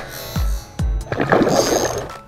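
Background electronic music with a steady beat. From about halfway through, water splashing as a hooked tilapia thrashes at the surface.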